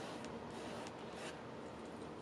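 Quiet steady hiss with a few faint soft ticks and rustles as a hand shakes a fountain pen to get the ink flowing after it failed to write.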